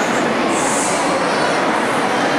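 Steady crowd noise echoing in a church, an even wash of sound with no single voice standing out.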